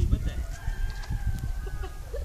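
A rooster crowing: one long, drawn-out call starting about half a second in. Under it runs an uneven low rumble.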